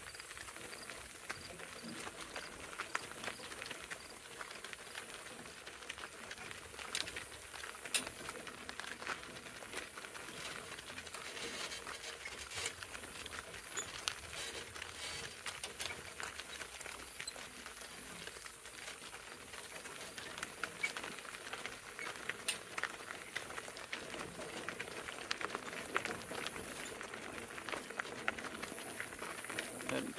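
A pair of donkeys pulling a cart at a walk on a gravel road: a steady crunch of wheels and hooves on gravel, with irregular sharp clicks and clinks from the harness and trace chains.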